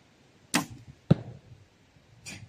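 Doom Armageddon crossbow fired: a sharp crack of the string and limbs releasing a 20-inch bolt, then about half a second later a heavier, louder thud as the bolt strikes the target.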